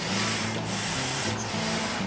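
Hand-operated floor pump being worked, air hissing through it in long strokes.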